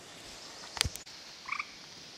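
An American toad giving a single short chirp about one and a half seconds in. A sharp click shortly before it is the loudest sound.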